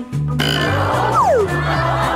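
Cartoon background music with a steady, repeating bass line. About half a second in, a noisy comic sound effect cuts in, with a quick downward pitch glide a little after one second.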